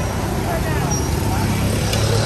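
Steady road traffic passing on a wet street: vehicle engines and tyre hiss, with faint voices in the background.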